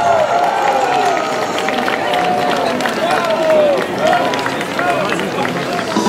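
Audience clapping and cheering, with many voices calling out over the applause.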